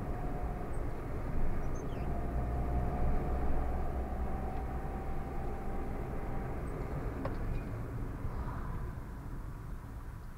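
Car driving, heard from inside through a dashcam: a steady low rumble of engine and tyre noise with a faint steady whine for a few seconds and a single click about seven seconds in, easing off near the end as the car slows behind the car ahead.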